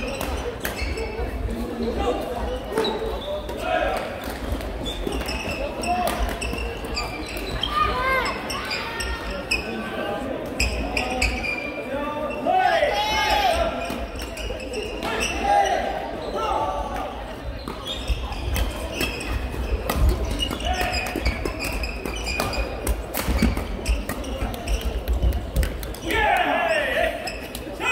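Badminton play in a busy sports hall: sharp racket strikes on the shuttlecock, footfalls and shoe squeaks on the wooden court floor, with the voices and calls of players and spectators throughout.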